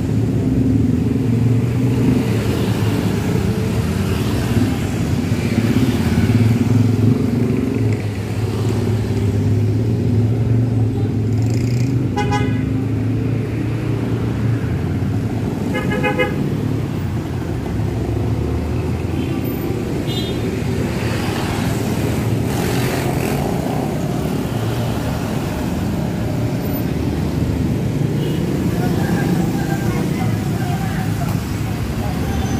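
City road traffic: car, motorcycle and minibus engines running steadily with tyre noise, and short horn toots twice near the middle, plus a fainter one a little later.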